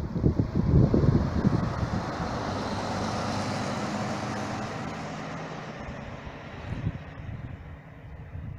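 A large sightseeing coach drives past, its engine and tyre noise swelling to a peak and then fading away as it moves off down the road.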